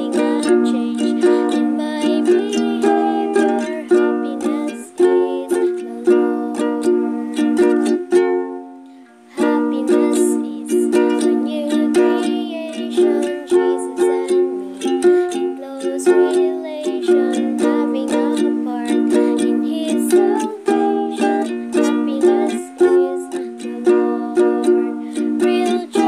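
A ukulele strummed in steady chords, accompanying a sung song. The playing breaks off briefly about nine seconds in, then resumes.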